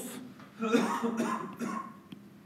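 A man coughing and clearing his throat, starting about half a second in and lasting about a second.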